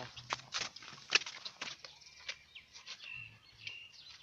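Birds calling: scattered sharp chirps and clicks, then from about three seconds in a short high whistled note repeated three times, over a faint low hum.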